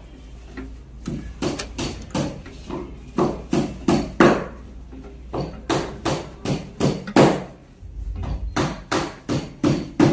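A rapid run of sharp knocks, about three a second and uneven in loudness, over a faint low hum, with a brief pause about halfway through.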